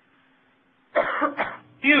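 A man coughs, a short double burst about a second in, after a near-silent pause; speech resumes just before the end.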